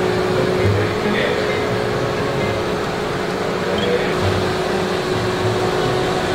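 A car's engine running at low speed as it is slowly manoeuvred into a tight parking space, heard as a steady hum with a constant tone throughout.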